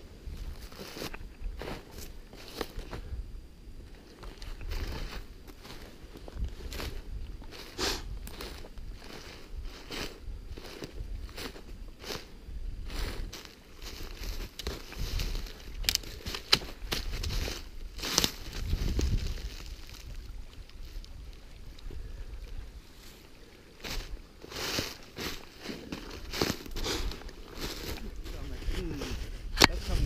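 Footsteps crunching through a thin layer of snow over dry fallen leaves: an irregular run of crunches, with a low rumble beneath.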